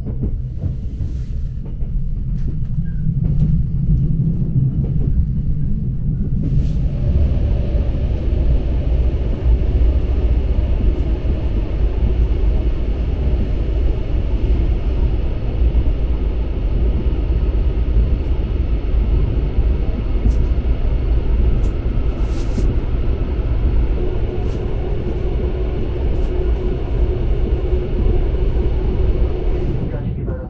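Interior running noise of a Mugunghwa passenger train car: a steady low rumble of the carriage rolling on the rails, which grows louder and hissier about six seconds in, with a few sharp clicks scattered through it.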